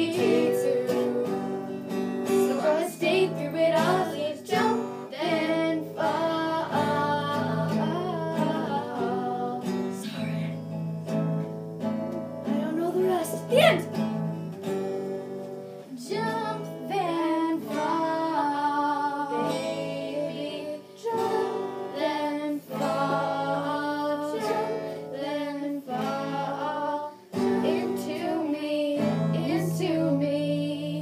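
Acoustic guitar strummed with girls singing along.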